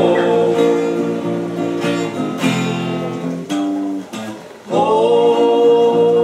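Three men singing together, with a strummed acoustic guitar. Their voices break off briefly about four seconds in, then come back.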